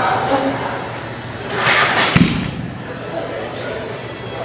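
Gym ambience with indistinct background voices. About two seconds in, a short noisy rush is followed by one heavy, deep thud.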